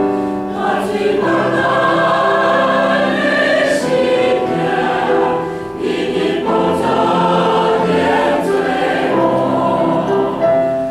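A mixed church choir of men and women singing a hymn anthem, several voices sounding at once, with a short break between phrases about six seconds in.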